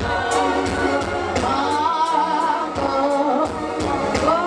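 A crowd singing together in a gospel-style choral song, with a steady beat of sharp hits about three times a second. About halfway through, one higher voice rises and falls above the group.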